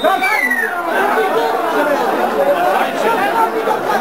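Several voices talking and shouting over one another, a loud, continuous babble from players and spectators at a football match.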